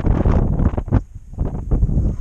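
Wind buffeting an action camera's microphone: a loud, gusty low rumble that rises and falls.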